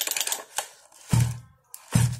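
Recoil starter of a 61 cc Sachs-Dolmar two-stroke chainsaw pulled by hand twice, about a second apart, turning the engine over against its compression without it firing, with a fast clatter of clicks at the start. The compression is strong, 'khủng khiếp' (tremendous).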